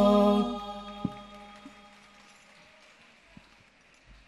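An al-Banjari group of voices and rebana frame drums ends a piece on a long held note: the singing cuts off about half a second in while the deep drum boom rings and fades away. There is a single light drum tap about a second in, and only faint clicks after that.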